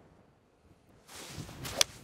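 Golf iron struck off the tee: a short rush of air as the club comes down, then one sharp click of the clubface hitting the ball near the end.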